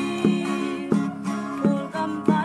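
Acoustic guitar strummed in a steady rhythm, a stroke about every 0.7 seconds, with the chords ringing between strokes.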